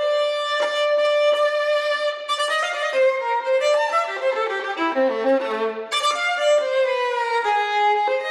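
Solo violin played with the bow: a long held note, then a quicker run of shorter notes stepping downward, then a new high note about six seconds in that slides down.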